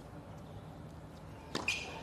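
Quiet outdoor court ambience, then a single sharp knock about one and a half seconds in: a tennis ball bounced on the hard court before a serve.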